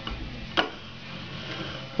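Wooden stool legs scraping over a parquet floor as a baby pushes the stool along, with one sharp wooden knock about half a second in.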